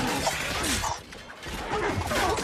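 Dense metallic clatter of armour and gear from a marching army of armoured soldiers in a film sound mix, dropping briefly to a quieter gap about a second in.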